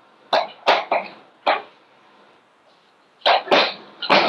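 Chalk on a blackboard as a word is written: six short, sharp strokes, four in the first second and a half, then a pause and two more near the end.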